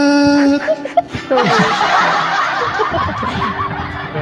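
A held sung note that breaks off about half a second in, followed by about two seconds of laughter.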